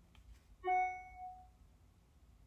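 A single struck musical note, like a chime or keyboard note, sounding once about half a second in and ringing out, fading away over about a second.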